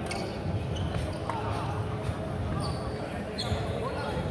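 Badminton doubles on a wooden sports-hall floor: sneakers squeaking several times in short high chirps as players move, with a few sharp racket-on-shuttlecock taps, over echoing voices in the large hall.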